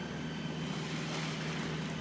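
A boat's engine running at a steady drone while under way, with water and wind noise over it.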